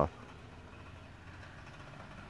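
A rough-running old car, a clunker, heard faintly as a steady low engine rumble.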